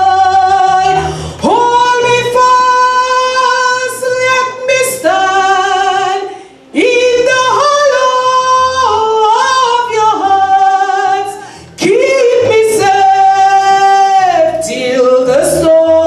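A woman singing a gospel solo, holding long notes with a wide vibrato, in phrases broken by short breaths about six and twelve seconds in.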